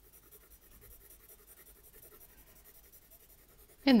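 Faint scratching of an HB graphite pencil shading back and forth on sketchbook paper with a side-to-side movement.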